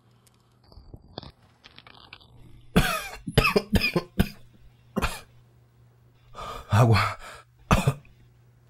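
A man coughing: a run of about five sharp coughs in quick succession, then a longer, heavier cough and one last short cough near the end.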